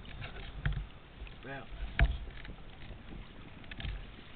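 Knocks and handling noise on a small fishing boat over choppy water, with water lapping at the hull; the loudest knock comes about two seconds in.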